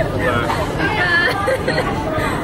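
People speaking and saying "bye-bye" over the background babble of a busy restaurant.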